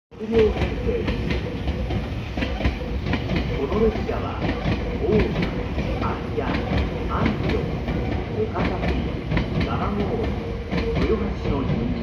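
Meitetsu 9100 and 3500 series electric train pulling out of the station, its cars rolling past with repeated clacks of wheels over the rail joints.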